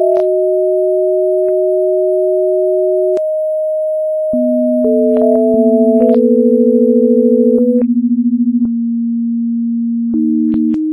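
Electronic pure sine tones held at steady pitches, two or three sounding together, each jumping abruptly to a new pitch every second or few with a click at every change. From about five and a half to eight and a half seconds in, the lowest tone warbles with a fast beat.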